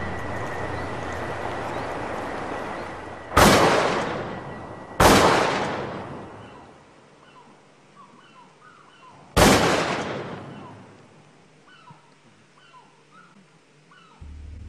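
Three shotgun blasts from a sawn-off shotgun, the first two about a second and a half apart and the third about four seconds later, each dying away in a long echo. Small birds chirp faintly between and after the last shots.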